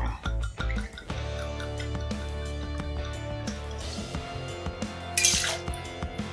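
Background music over spiced rum being poured: a faint trickle into a steel jigger, then a short splash into a metal cocktail shaker about five seconds in.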